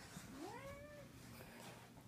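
One faint, short, rising cry from a house pet, gliding up in pitch and then holding briefly, near the start.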